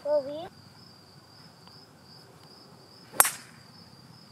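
Golf club striking a ball off the tee: one sharp crack about three seconds in, with a short ring after it. Insects sing steadily at a high pitch throughout.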